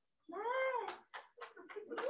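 One short pitched call that rises and then falls in pitch, followed by a few light clicks.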